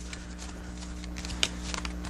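Steady low hum in the room, with a few light clicks about a second and a half in.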